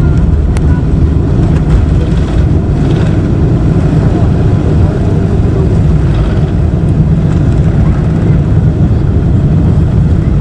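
Steady loud roar of a Boeing 747's jet engines at takeoff thrust, mixed with runway rumble, heard from inside the cabin during the takeoff roll.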